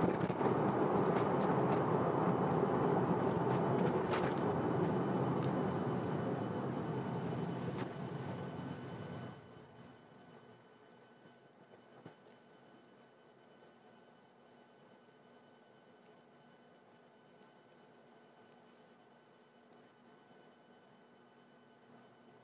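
Road and tyre noise inside a Tesla electric car's cabin, fading as the car slows and dropping off suddenly about nine seconds in as it comes to a stop. After that the stationary cabin is near silent, with a faint hum and a small click a couple of seconds later.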